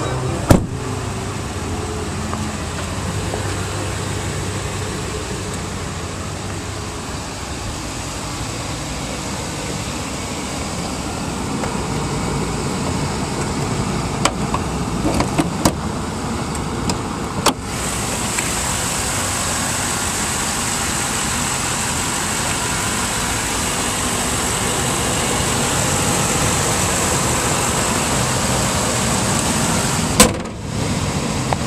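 A car engine running steadily close to the microphone, with a few short knocks about halfway in. A thin, high steady tone joins it just past halfway.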